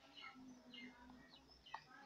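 Near silence, with faint bird chirps in the background.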